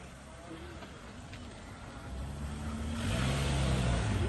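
A car engine accelerating. The sound grows louder over the second half, and the engine note rises and then eases near the end.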